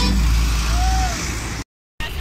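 Road traffic with a truck driving past, a heavy steady low rumble under an even noise, fading about a second in; the sound cuts off to dead silence shortly before the end.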